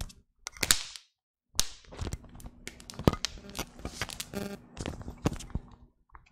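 Handling noises at a desk close to the microphone: a run of sharp clicks, taps and knocks, broken by a short silent dropout about a second in.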